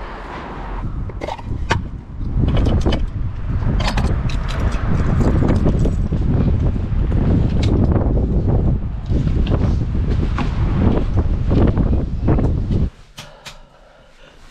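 Strong wind buffeting the microphone, with scattered clicks and knocks from a key working a door lock. The wind noise cuts off suddenly near the end.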